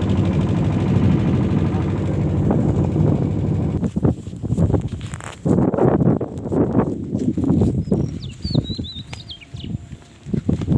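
A boat's engine running with a steady low rattle, stopping suddenly about four seconds in. Irregular knocks and rustling follow, and a bird chirps briefly near the end.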